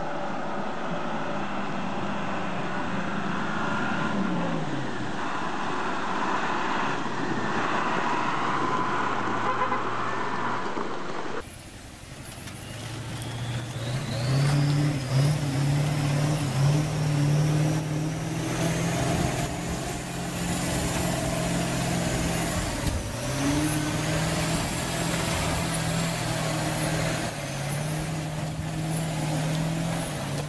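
Heavy truck engine running under load while the truck drives through a fast river, over a rush of water. About eleven seconds in, a second truck engine takes over, also labouring through water. Its pitch dips and rises, and a high whine climbs above it.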